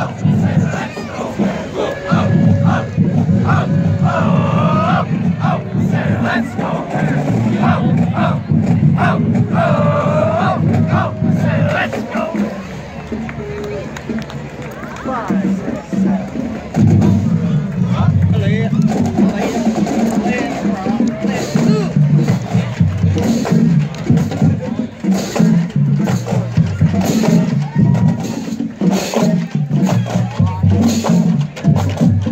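A high school marching band and parade crowd: voices shouting and calling with rising and falling pitch in the first half. Sharp drum clicks come in more and more often in the second half.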